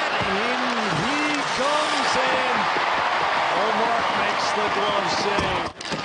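Hockey arena crowd: a loud steady din of many voices with individual shouts rising out of it, and a few sharp knocks of sticks and puck. The sound drops out abruptly for an instant near the end.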